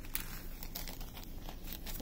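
Small clear plastic bag of resin diamond-painting drills being handled, crinkling in a string of faint, quick rustles.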